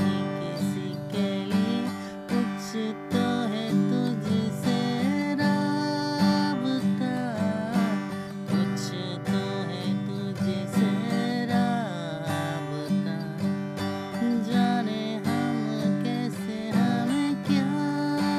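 Acoustic guitar strummed on a single G major chord in a steady, repeating down-down-up-up-down-down-up pattern, with a man's voice singing a melody along with it.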